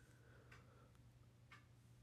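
Near silence: room tone with a faint low hum and two faint ticks about a second apart.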